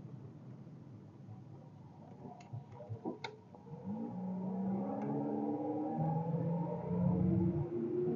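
Cabin sound of a 1987 VW Fox's 1.6-litre carburetted four-cylinder engine pulling the automatic car up a steep hill: a low drone that grows louder from about four seconds in, with steady tones that shift in pitch. A few light clicks about three seconds in.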